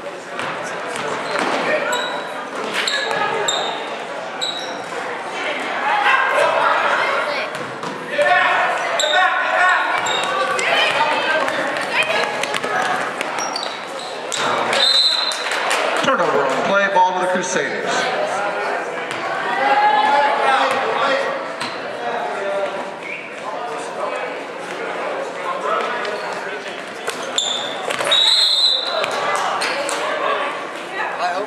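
Basketball bouncing on a hardwood gym floor during play, with indistinct voices of players and spectators calling out, echoing in the large hall.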